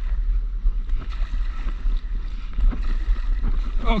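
Wind rumbling on the microphone of an action camera mounted on a stand-up paddleboard, with water lapping and splashing around the board.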